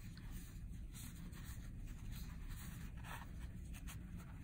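Faint rubbing and scratching of yarn drawn over a metal crochet hook as double crochet stitches are worked, over a low steady hum.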